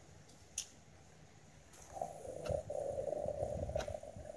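Near silence with one faint click, then from about halfway through a rough rubbing, rustling noise close to the microphone, the sound of the recording device or something held against it being handled.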